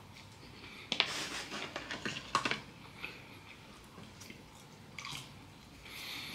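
A mouthful of French fries being chewed close to the microphone, with a few faint sharp clicks about a second in, around two and a half seconds and near five seconds.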